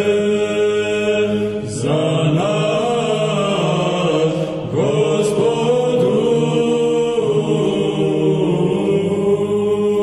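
Serbian Orthodox liturgical chant: voices sing a moving melody over a held low drone note, with brief breaks for breath about two seconds in and again near the middle.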